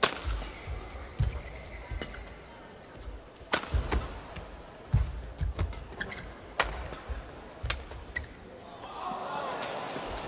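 Badminton rally: rackets striking the shuttlecock in sharp cracks, one loudest jump smash about three and a half seconds in, with players' feet thudding on the court. About nine seconds in the strokes stop and crowd chatter rises as the rally ends.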